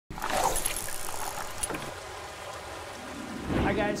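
A rushing, hissing sound effect that starts suddenly, loudest at first and then steadier, with a few faint clicks in the first two seconds. Near the end a man's voice comes in.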